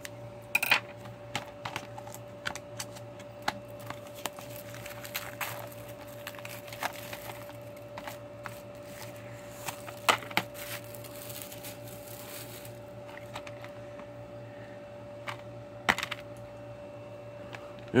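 A plastic DVD case being unwrapped: its shrink-wrap is slit, crinkled and pulled off, with scattered sharp clicks and taps of the hard plastic case, the louder ones near the start, about ten seconds in and near the end. A steady faint electrical hum runs underneath.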